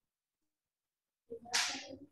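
Silence, then about a second and a quarter in, a short hissy burst of a person's voice or breath coming through the video call, cut off by the call's noise gate.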